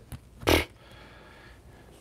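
A short, sharp sniff through the nose about half a second in, after a faint click.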